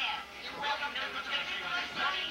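A person's voice, words unclear, speaking at a steady level with a short dip about a quarter second in.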